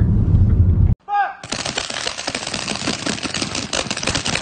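Car cabin road rumble for about a second, then after a cut a short shout and a dense, continuous crackle of many paintball markers firing rapidly at once.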